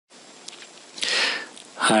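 A short sniff, a quick breath drawn in through the nose, about a second in, over faint hiss. A man's voice starts speaking near the end.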